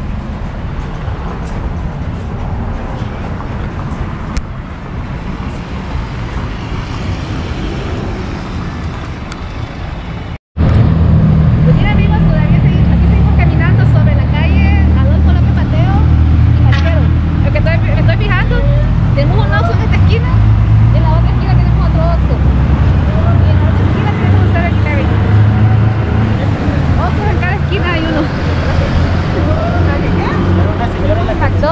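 City street sounds: road traffic running, with people talking in the background. About ten seconds in, the sound drops out for an instant and comes back louder, with a heavy low engine rumble under the voices.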